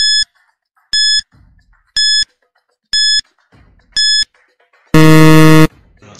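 Quiz countdown-timer sound effect: five short, high beeps one second apart, then a louder, lower buzzer lasting under a second that signals time is up.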